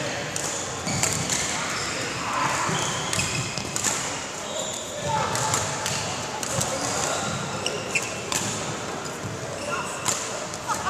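Badminton racket strings striking shuttlecocks in a large echoing hall: repeated sharp hits, about one to two a second, with voices in the background.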